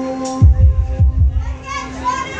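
Live rock band's opening: a held drone note cuts off about half a second in, and deep bass-drum thumps follow in pairs like a heartbeat. The crowd shouts and cheers near the end.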